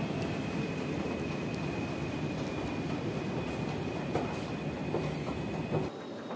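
Metro station escalator running: a steady mechanical rumble and hum with a thin high whine and occasional light clicks. The sound drops away just before the end.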